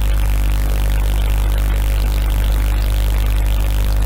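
Steady low electrical hum with a constant hiss over it, unchanging throughout.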